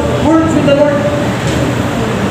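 Speech: a man preaching.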